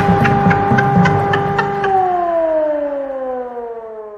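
Air-raid siren sound effect over a fast ticking beat, held on a steady pitch, then winding down in pitch about two seconds in and fading out near the end.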